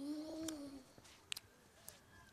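A single short voiced call, pitched and slightly arching up then down, lasting under a second. It is followed by a sharp click a little past the middle.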